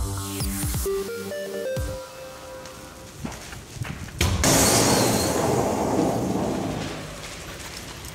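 A short electronic station jingle ends about two seconds in. Then comes a car fire burning with crackling, a sharp crack just after the middle, and louder rushing flames for a few seconds before they settle.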